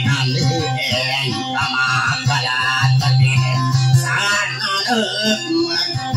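A man singing into a microphone to his own strummed acoustic guitar, with a steady low note held under the voice.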